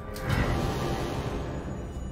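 Horror-film soundtrack: a dark, low swell of scary music and sound design that peaks just after the start and slowly fades.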